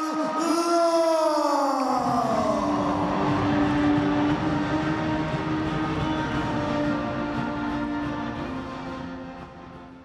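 A ring announcer's long, drawn-out call of the winner's name, held and then sliding down in pitch. It gives way to arena noise and music, which fade out near the end.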